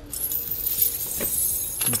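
Steel twist-link tire chains jingling and clinking continuously as they are lifted by hand and draped over a car tire.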